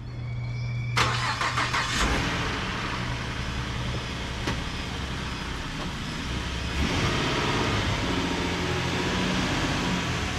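Pickup truck engine cranking over for about a second and catching, then idling; near seven seconds it picks up as the truck pulls away.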